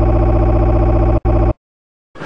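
A loud, harsh, steady buzz with a brief dropout just over a second in, then cut off abruptly to dead silence about one and a half seconds in.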